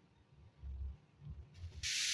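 Soft, low handling thumps as a plastic protractor-ruler is moved and lifted off drawing paper, followed near the end by a short hiss.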